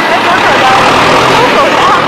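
Loud rushing wind and running noise on a phone's microphone aboard a moving tractor, with young women's voices over it.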